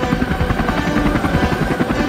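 Helicopter rotor chopping in a fast, steady beat, with a faint engine whine over it.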